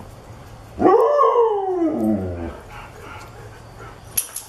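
A dog giving one drawn-out vocal call about a second in, rising quickly and then sliding down in pitch over a second and a half.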